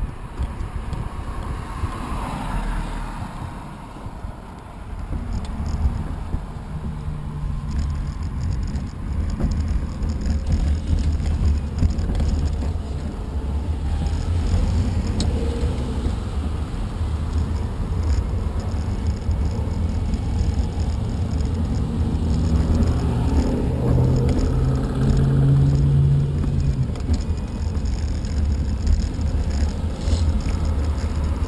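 Steady low rumble of a small vehicle carrying the camera along the pavement, with road and wind noise. A low motor hum comes up briefly about seven seconds in and again, louder, near the end.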